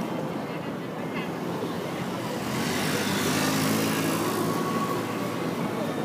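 Street noise with a motor vehicle passing close by: its engine hum and tyre noise swell about two and a half seconds in, peak, and fade near the end, over a background of voices.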